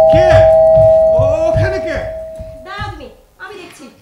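Actors' voices in short, loud exclamations over a steady held two-note tone, which cuts out about three seconds in; the voices die away toward the end.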